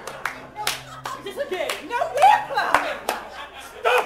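Several sharp, separate hand claps from performers on stage, with voices calling out between them, loudest a little past the middle.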